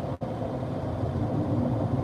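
Steady road noise inside a car cabin at motorway speed: a low, even rumble of tyres and engine, with a momentary gap in the audio just after the start.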